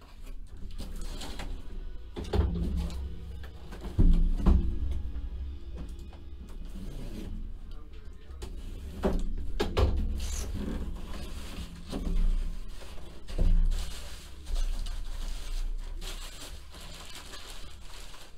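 Cardboard shipping case being handled and its lid opened: several knocks and thumps against the box, over faint steady background music.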